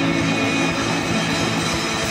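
Live rock band playing loudly: electric guitars holding a dense, sustained chord over drum hits.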